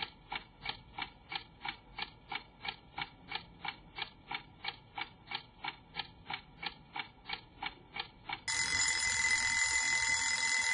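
Clock ticking steadily, about three ticks a second, then an alarm ringing from about eight and a half seconds in, louder than the ticks.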